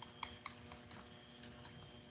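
A few faint, irregular clicks of a stylus tapping on a tablet screen while handwriting, the two sharpest in the first half second, over a faint steady electrical hum.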